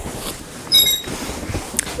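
Dress form being turned on its stand: a brief high squeak about a second in, then a faint click near the end, over low handling rustle.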